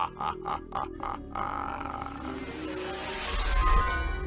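A man's drawn-out laugh, in even pulses of about five a second, running on until about a second and a half in. Then music takes over and swells with a rising sweep, reaching its loudest shortly before the end.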